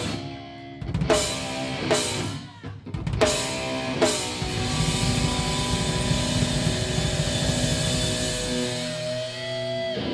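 Live heavy band with drum kit, bass guitar and distorted electric guitars playing stop-start unison hits with cymbal crashes about once a second. About four seconds in the band settles into continuous drumming under one long held note that bends upward near the end and cuts off.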